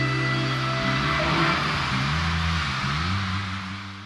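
End of a live rock song: a held chord rings, then about a second in breaks up into a wash of noise with sliding low notes, fading away near the end.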